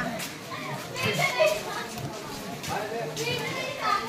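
Children's and people's voices chattering and calling out in short snatches of untranscribed talk.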